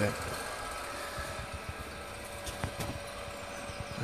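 Ignition test-bed motor spinning a Kawasaki KH400 pickup rotor at about 500 rpm, the kickstart speed: a steady low mechanical running with a faint steady whine.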